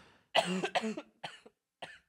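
A man coughing in a short run of coughs while laughing, the longest cough about a third of a second in and smaller ones after it.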